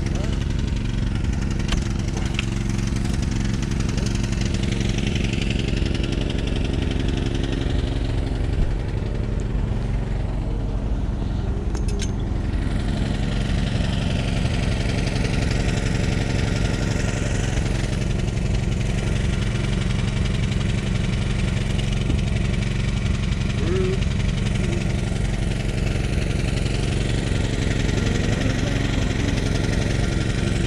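Steady low engine hum, with people talking in the background.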